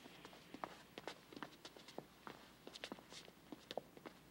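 Faint footsteps of several people walking out, an irregular scatter of light taps, several a second.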